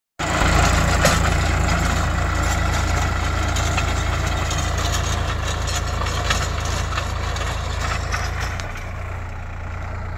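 Sonalika 745 tractor's diesel engine running steadily under load while pulling a plough through dry soil, growing a little fainter near the end as the tractor moves away.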